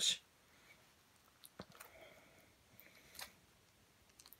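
Faint, sparse clicks and light crinkling as shrink-wrapped card decks are opened by hand.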